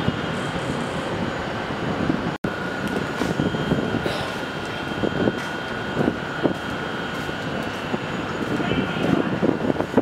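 Continuous city traffic noise heard from high above the street, with a faint steady whine running through it. The sound drops out for an instant about two and a half seconds in.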